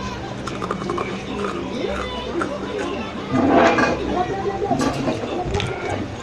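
Close-miked mouth sounds of eating into a microphone: a run of small wet clicks and smacks, with a louder noisy burst about three and a half seconds in.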